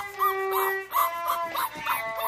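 Boxer puppy howling along to music in a series of short, arching yowls, over steady held musical notes.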